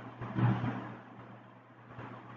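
A steady low hum under faint background noise, with a brief soft noise about half a second in.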